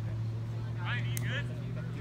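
A steady low hum runs throughout. About a second in, there is a short burst of voices and a single click.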